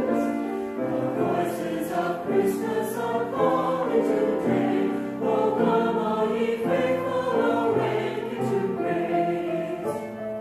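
Church choir of men and women singing a Christmas cantata, the voices moving in held chords that change about once a second.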